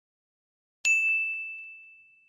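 A single bright bell ding about a second in, one clear tone that rings out and fades over about a second and a half. It is the notification-bell chime of a subscribe-button animation.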